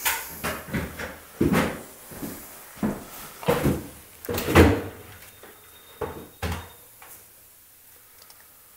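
A string of irregular knocks and rustles from handling and moving about, about nine in all, the loudest about four and a half seconds in, dying away after six and a half seconds.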